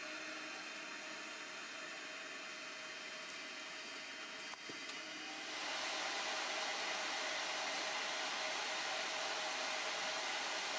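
Steady whirring hiss, like a fan or blower, growing louder about halfway through, with one faint click just before it does.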